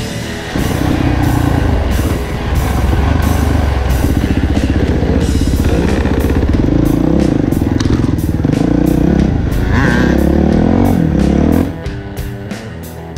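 Dirt bike engine revving through rising and falling pitch as the bike is ridden along a muddy trail. It cuts in about half a second in and cuts out just before the end, with rock music underneath.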